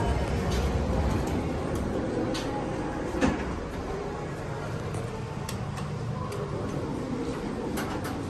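Schindler hydraulic elevator's sliding doors standing open as the car is entered, over a steady low hum. There is one sharp thump about three seconds in.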